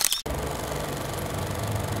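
A brief sudden burst at the very start, then a steady low drone with an even hiss over it.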